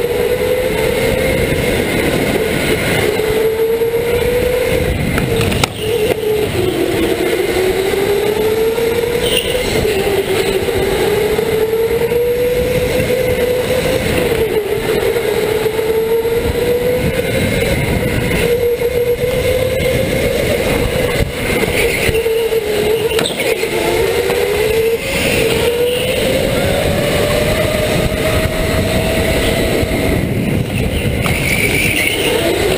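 Electric go-kart motor whining, its pitch climbing with speed and dropping sharply several times as the kart slows for corners, over steady wind and tyre rush on an onboard microphone.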